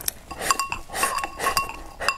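Chopsticks clinking against a glazed ceramic bowl several times, the bowl ringing briefly after each knock, mixed with slurping sips from the bowl.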